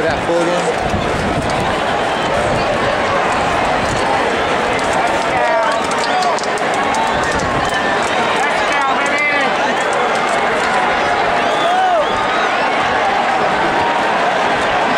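Stadium crowd noise: many voices talking and calling out at once at a steady level, with a few louder shouts rising above the hubbub.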